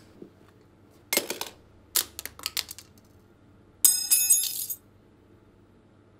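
Weapons dropped onto a tiled floor: a few hard clattering impacts, then about four seconds in a metal object lands with a brief bright metallic ring.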